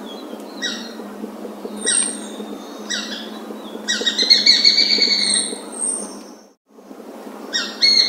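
Besra (Accipiter virgatus) calling: a few short, clipped notes about once a second, then a rapid chattering run of notes lasting about two seconds. The sound drops out for a moment, then the calls start again near the end.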